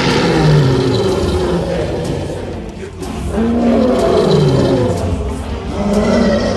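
Lion roaring: several long roars in succession, each rising and then falling in pitch, with a brief lull about halfway through.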